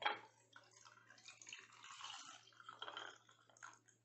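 Milk being poured from a jug into a glass mug of ice cubes: a faint liquid stream that starts suddenly and stops just before the end.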